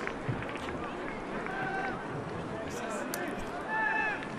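Open-air football pitch sound with no crowd: a steady outdoor hiss with faint voices calling from the field, and a couple of dull knocks near the start.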